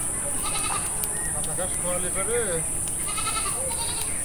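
Goats bleating in a few short, wavering calls, over a steady high-pitched insect drone with occasional bird chirps.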